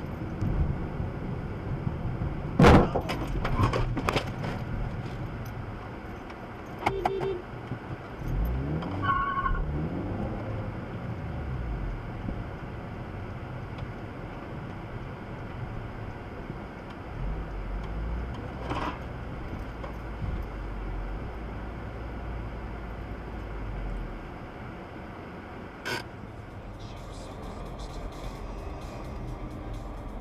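Road and engine noise heard from inside a moving car, with one loud, sharp knock about three seconds in and a few smaller knocks and clicks after it.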